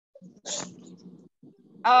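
A short breathy burst from a person's voice about half a second in, over faint background noise from a call microphone. A woman's voice starts speaking near the end.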